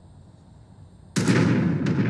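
A sudden loud explosion-like blast about a second in, lasting just over a second with a sharp crack near its end, then cutting off abruptly.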